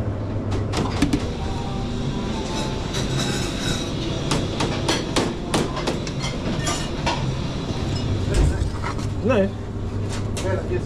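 Spatula scraping hummus out of a metal food-processor bowl into a stainless steel bowl, with repeated clinks and taps of metal on metal, over a steady low hum.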